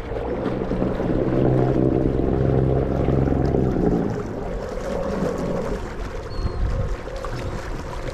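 Fishing kayak underway on choppy open water, with water noise at the hull and some wind. A steady low hum swells about a second in and fades out about four seconds in.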